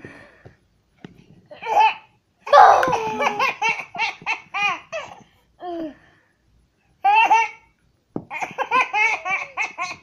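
A toddler laughing hard in runs of quick, high-pitched bursts, with short pauses between the runs.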